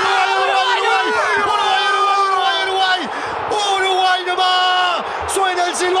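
A football commentator's drawn-out shout, one vowel held for long stretches with brief breaks for breath, over a stadium crowd, calling the final whistle.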